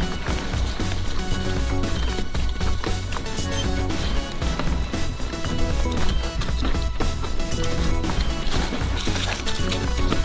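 Background music with a steady beat, over the rattle and knocks of a mountain bike riding across a rocky trail.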